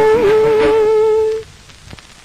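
A woman singer holds the last long note of an old Hindi film song, which cuts off about one and a half seconds in. Faint hiss of the old recording follows.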